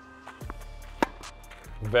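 Background music with held tones and a bass line, and a single sharp crack of a tennis racket hitting the ball on a backhand about a second in.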